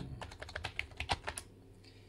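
Computer keyboard typing: a quick run of keystrokes over the first second and a half, then a single key press near the end as the command is entered.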